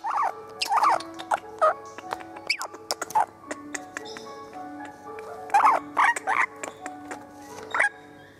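Parrot giving short, rising-and-falling squawking calls in clusters: about a second in, around three seconds, around six seconds and just before the end. Background music of held, stepping notes runs underneath.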